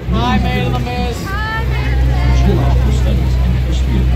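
Steady low drone of a tour boat's engine below a waterfall, with passengers' voices over it in the first second and a half.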